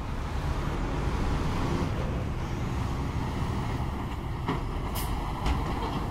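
Steady low rumble of road traffic and industrial plant noise, with a faint knock or two near the end.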